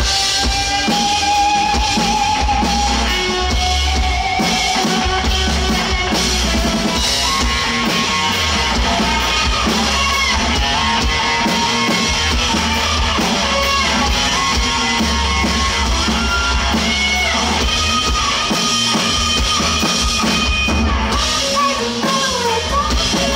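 Live rock band playing loudly: drum kit with bass drum, electric bass and electric guitar, in a dense, steady full-band passage.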